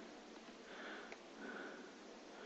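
Very quiet room tone with two faint breaths through the nose, the first a little under a second in and the second about half a second later, and a faint click between them.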